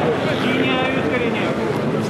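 Several men's voices shouting over one another from the pitch and stands, over steady crowd noise, as a rugby lineout is set up.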